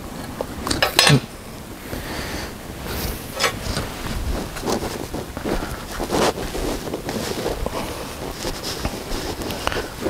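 Short steel pipe and angle-iron offcuts clinking and knocking against each other and a metal table as they are handled, in a handful of separate knocks.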